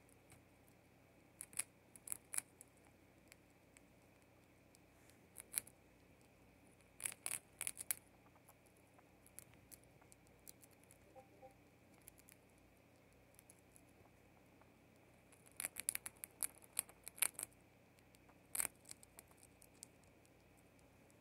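Pet mouse gnawing on a hard treat: faint, sharp little crunching clicks in quick clusters, with pauses between while it chews.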